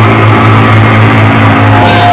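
Loud live hardcore thrash band: distorted electric guitar and bass holding one sustained, ringing chord with a strong low note.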